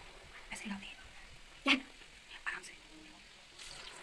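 Samosas frying in a kadai of hot oil, a faint steady sizzle, under quiet murmured voices.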